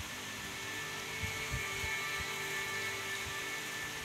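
A steady electrical hum with a faint high whine running throughout, with a few faint soft sounds of puppies lapping milk from a plate.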